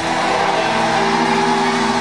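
Background music: a sustained chord with several notes held steady, with no voice over it.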